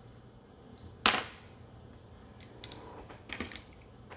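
A single sharp click about a second in, followed by a few faint ticks near the end, over a quiet background.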